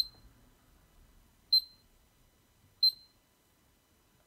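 Miele W1 washing machine control panel beeping three times, one short high beep for each button press as the Dos option and the program settings are selected: once at the very start, again about a second and a half in, and once more near the three-second mark.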